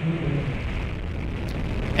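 Atlas V rocket's RD-180 main engine and solid rocket boosters firing at ignition and liftoff: a steady, noisy rush over a deep rumble.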